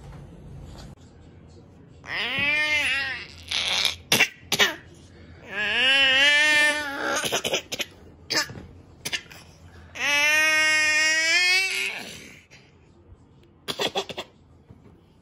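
A toddler's long, high-pitched playful squeals: three drawn-out calls that arch and waver in pitch, about two, six and ten seconds in, with a few short sharp clicks between them.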